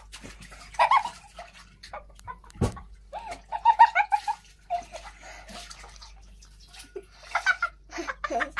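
Young children squealing and giggling in high voices as they play, in short bursts, with one dull thump about two and a half seconds in.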